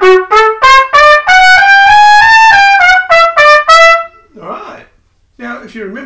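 Trumpet playing a difficult, "nasty little" passage: a quick string of short, separated notes with a longer connected run in the middle that climbs and falls, stopping about four seconds in. A short laugh follows, and a man starts talking near the end.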